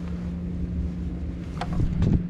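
Wind rumbling on the microphone over a steady low hum, with a click about one and a half seconds in and a louder clunk near the end as the electric scooter's folding stem is raised and locked upright.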